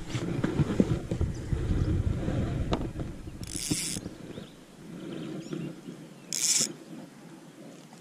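Spinning reel being cranked to retrieve line, a mechanical whirring with fine rapid clicking for the first few seconds. Two short hissing bursts come later, the second near the end.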